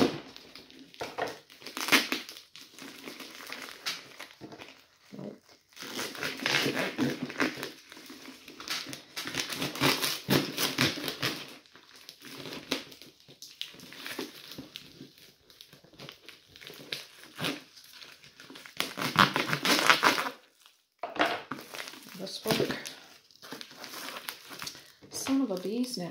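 A tightly wrapped parcel being cut open with a knife: its plastic and paper wrapping crinkles and tears in irregular bursts, stopping and starting as it is worked free.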